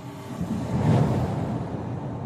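Cinematic trailer sound effect: a deep, rumbling rush of noise swells to a peak about halfway through and then slowly eases off, over faint music tones.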